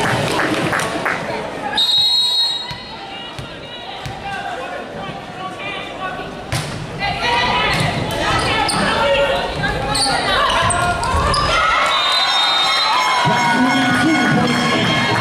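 Indoor volleyball point in a large echoing hall: a short referee's whistle about 2 s in, then a few sharp ball knocks as play starts, followed by players calling and shouting through the rally and a louder burst of cheering near the end as the point is won.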